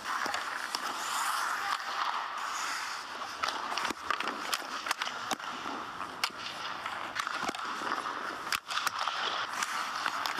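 Ice hockey skates carving and scraping on the rink ice, with sharp, irregular clacks of sticks and pucks.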